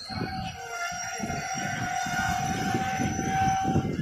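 A train horn sounding one long steady note for about three and a half seconds, over rumbling platform noise.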